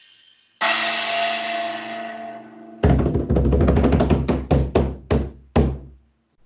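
Drums and cymbal played with sticks. A cymbal crash about half a second in rings and fades, then a fast roll of drum strokes starts about three seconds in and breaks into a few separate loud hits, the last just before the end.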